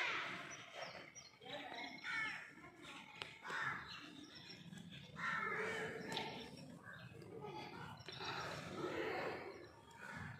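Birds calling, harsh cawing calls every second or two, with people's voices in the background.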